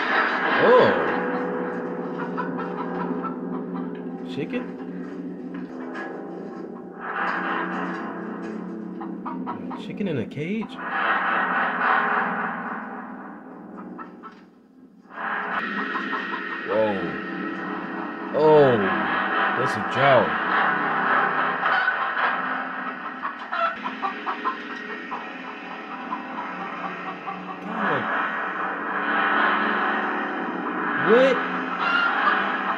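Horror-film soundtrack: a dissonant droning score of layered steady tones and gong-like metallic clangs. It drops away briefly just before halfway, and short rising-and-falling cries sound several times in the second half.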